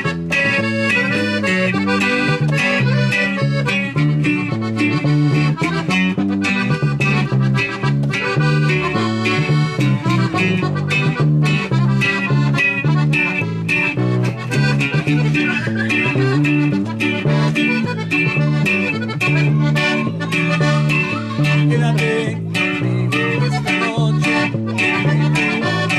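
Norteño band playing live: a button accordion carries the melody over a strummed twelve-string bajo sexto and a bass keeping a steady beat.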